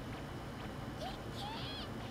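Faint audio from the anime episode: a low steady soundtrack bed, with a short high, gliding voice-like call about a second in.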